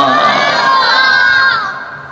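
Crowd of many voices calling out a response together, loud for about a second and a half, then dying away.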